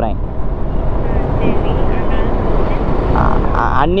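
Motorcycle ridden along a city road: a steady rush of wind over the microphone mixed with engine and tyre noise.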